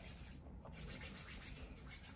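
Hands rubbing and working through hair close to the microphone: a soft, scratchy rustle in quick repeated strokes.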